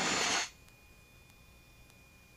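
The tail of a man's throat-clearing, ending in a short hiss that cuts off about half a second in; then near silence with a faint steady high tone.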